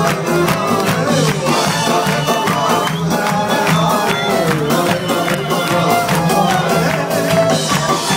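A live rock band playing with electric guitars, violin and drums keeping a steady beat, with singing over it, heard from within the audience.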